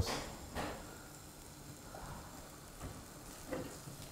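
Faint sizzling of butter melting in a hot pan of egg bhurji, with a brief sharp sound about half a second in.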